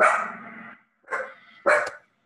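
A dog barking three times: once at the start, then twice more in quick succession near the end.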